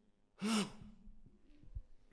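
A man's single loud, breathy sigh into a handheld microphone about half a second in, followed by a faint low thump near the end.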